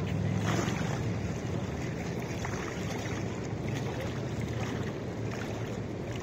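Steady wind buffeting the microphone, with small waves lapping against a concrete-block shoreline over a low, steady rumble.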